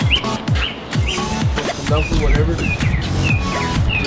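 Background electronic music with a steady beat: repeating deep falling sweeps under short, high, falling chirp-like notes.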